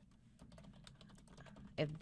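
Computer keyboard being typed on: a quick run of key clicks lasting just over a second as a name is entered into a text field.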